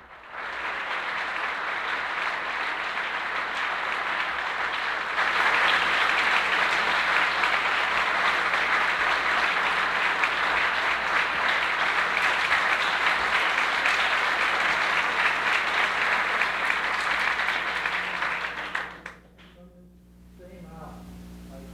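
Audience applauding, growing louder about five seconds in and dying away shortly before the end.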